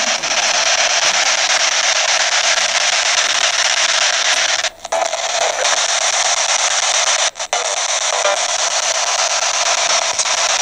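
Ghost box (radio-sweep spirit box) giving out a steady loud hiss of static, cut off twice very briefly, about halfway through and again a little later.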